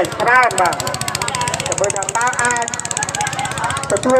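Mostly speech: people talking loudly among a crowd, over a steady, fast-pulsing hum like a small motor running.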